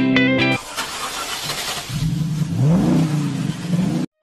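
A guitar music phrase cuts off about half a second in to a rush of wind and engine noise from a moving motorcycle, whose engine then revs up, rising in pitch a couple of times.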